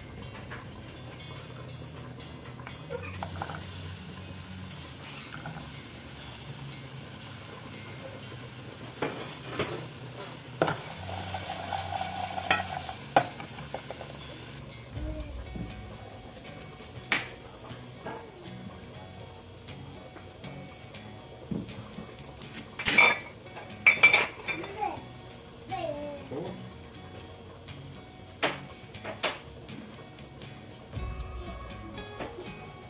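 Sliced onions sizzling in a pot over a gas flame for about the first half. After that come scattered knife clicks and scrapes as a carrot is peeled by hand, with a few sharp knocks of utensils and dishes, the loudest about three quarters of the way in.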